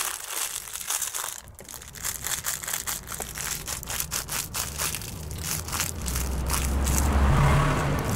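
Clear plastic bag crinkling and crackling as a mesh stress ball filled with small balls is squeezed inside it, a rapid, uneven run of crackles. A low rumble swells in the last few seconds.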